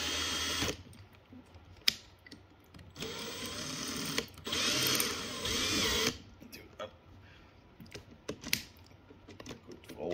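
Makita XPH12 brushless cordless drill's motor run in bursts on the trigger while the chuck is gripped by hand, spinning the keyless chuck tight: a short burst at the start, then two longer runs a few seconds in, with a couple of sharp single clicks in the quieter stretches.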